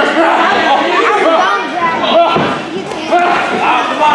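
Crowd of spectators yelling and shouting over one another, with a single thud about halfway through.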